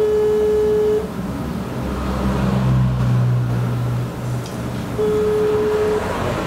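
Telephone ringback tone through a mobile phone's loudspeaker: a steady tone near 425 Hz sounds for about a second, stops, and comes back about four seconds later, the European ringing cadence. It means the called line is ringing and not yet answered. A low hum sounds in the gap between the rings.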